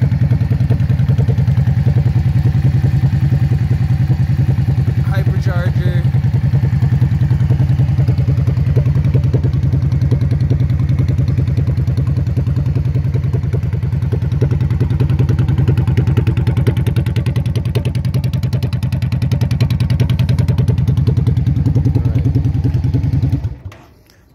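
Yamaha V-Star 650's air-cooled V-twin idling steadily through Vance & Hines aftermarket exhaust pipes. It is switched off near the end and stops abruptly.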